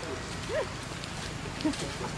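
Two short pitched vocal calls over steady background noise: one rising and falling about half a second in, and a shorter, lower one near the end.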